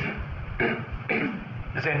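A man clearing his throat in a few short bursts, then starting to speak again near the end.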